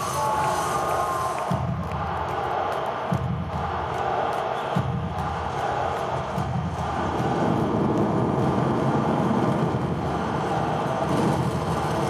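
Stadium PA playing a concert's intro film soundtrack: deep booms about every second and a half, then a steady low rumble, over a large cheering crowd. A whistle sounds in the first second or so.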